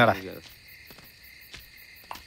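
Crickets chirping in a steady, fast pulse, with a man's voice trailing off in the first half second and a few faint clicks.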